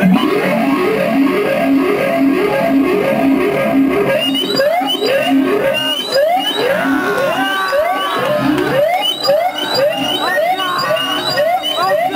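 Distorted electric guitar from a live punk band, first hammering a repeated chord riff, then from about four seconds in breaking into a noisy run of quick rising pitch slides and squeals, over and over.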